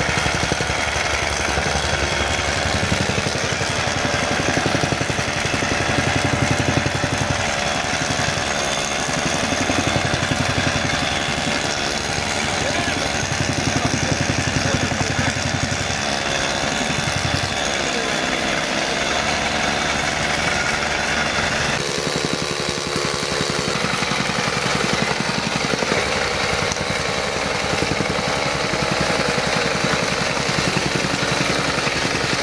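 Fermec backhoe loader's diesel engine idling steadily, with people's voices over it.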